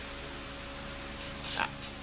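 Shop fan running: a steady whooshing hiss with a low, even hum under it.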